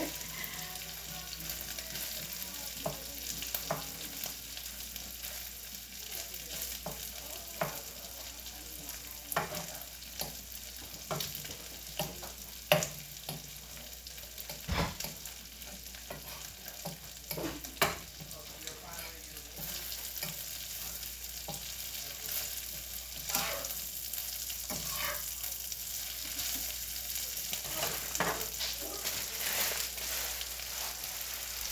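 Food sizzling steadily in a frying pan while it is stirred, with frequent sharp clicks and scrapes of the utensil against the pan.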